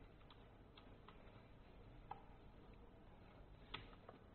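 Faint, scattered clicks of a computer keyboard and mouse, about half a dozen spread unevenly, as a command is typed and text is selected.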